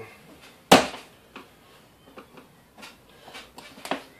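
A screwdriver prying a solid rubber tire bead onto a wheelchair wheel rim. There is one sharp click about three quarters of a second in, then a few light, scattered ticks.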